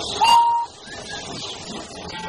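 A short, shrill steam-engine whistle blast about a quarter second in, rising briefly in pitch and then holding steady before cutting off, over a steady hiss of steam.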